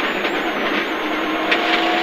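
Rally car's engine and tyre noise heard from inside the cabin at speed, a steady drone, with a faint steady tone coming in over the last half-second.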